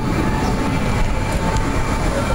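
Motorized wheelchair climbing a steep street: a steady rumble of its wheels on the asphalt and the frame shaking, with a faint steady motor whine.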